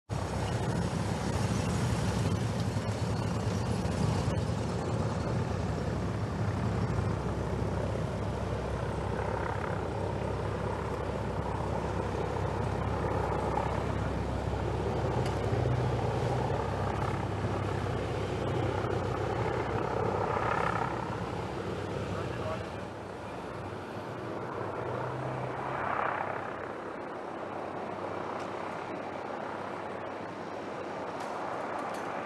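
Motorcade vehicles driving past with a steady low engine rumble that drops away about two-thirds of the way through, with indistinct voices in the background.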